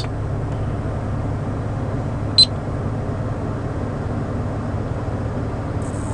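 Steady low hum inside the cabin of a 2005 Honda Odyssey minivan, with one short high beep from the navigation unit about two and a half seconds in.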